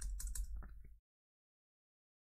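Computer keyboard typing: a quick run of keystrokes that cuts off about a second in.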